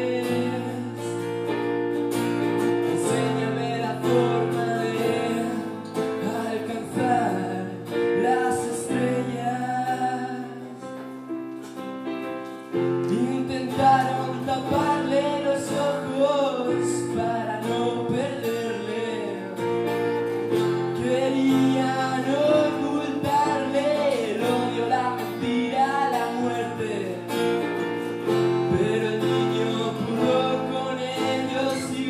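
A song performed live on acoustic guitar and keyboard, with a voice singing over them. The accompaniment thins out briefly before the middle and comes back fuller a little after it.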